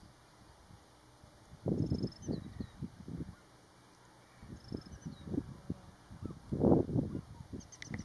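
Wind buffeting the microphone in irregular gusts, strongest about two seconds in and again near seven seconds. Faint high bird chirps in the background between the gusts.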